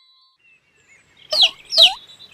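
Two loud, short bird chirps about a second and a half in, each sliding down in pitch, over faint high twittering. A held chime note dies away at the very start.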